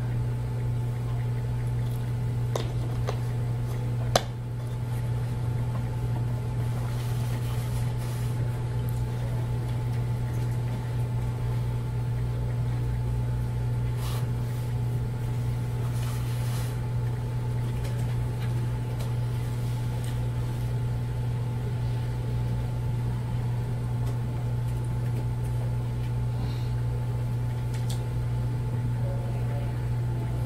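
Steady low hum of room tone, with one sharp click about four seconds in and a few fainter scattered clicks.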